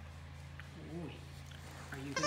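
A steady low hum, with one short voiced sound about a second in that rises and then falls in pitch.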